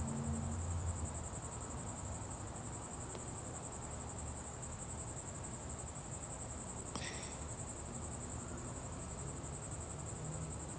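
Crickets trilling in a steady, high-pitched, evenly pulsing chirr.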